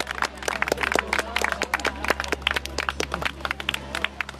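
A crowd clapping and applauding, many irregular claps over a steady low hum.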